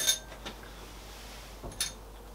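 A quiet spell of room tone, then near the end a single short metallic clink of a hand tool against the engine's valve gear as the tappet locking nut is worked on.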